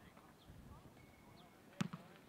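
Quiet open-air background with faint distant voices, broken near the end by a sharp thump and a softer second one just after.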